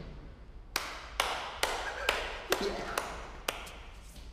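Sharp, evenly spaced hand claps beating time at about two a second, each with a short ring off a hard-walled room, made by a man as he dances.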